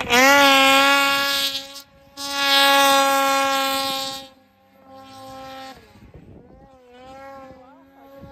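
Snowmobile engine held at high revs while riding in deep powder: a loud, steady engine note that rises as the throttle opens, breaks off briefly about two seconds in, then falls away to a much quieter, wavering engine note a little after four seconds.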